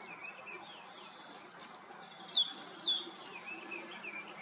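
A small bird singing: a quick, varied run of high chirps and whistles, several notes sweeping sharply downward, with fainter calls before and after.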